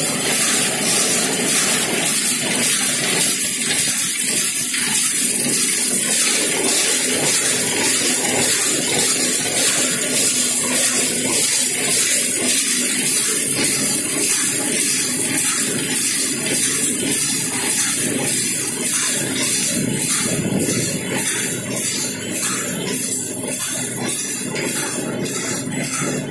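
Power loom converted to rapier weaving, running steadily while it weaves: a loud, continuous mechanical noise with a fast, even beat.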